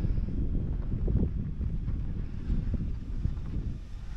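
Wind buffeting the microphone, a low fluttering rumble with no clear motor tone.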